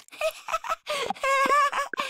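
Cartoon video-game sound effects as a bunny character hops and catches carrots: a quick run of short blips, then a wavering high-pitched squeak from about a second in.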